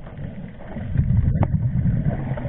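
Scuba regulator exhaust underwater: a diver breathing out, the bubbles giving a low, uneven bubbling that builds about half a second in and carries on, with one short click about midway.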